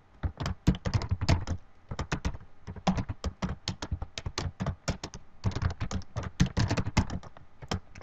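Typing on a computer keyboard: a quick, uneven run of keystrokes, several per second.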